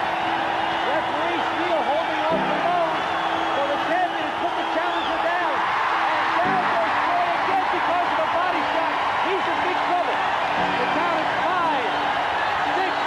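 A large boxing-arena crowd cheering and shouting throughout, many voices at once. Sustained low music chords run underneath, changing every few seconds.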